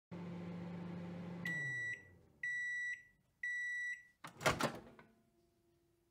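Microwave oven running with a steady hum that winds down as the timer ends, then three beeps about a second apart signalling that it is done, followed by a clunk as the door is opened.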